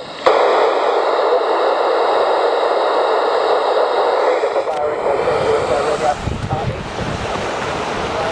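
Steady hiss of an open FM receiver on 439.000 MHz coming through a 70 cm transceiver's small speaker. It starts abruptly just after the start and cuts off with a click about halfway through. After that comes rough wind and surf noise.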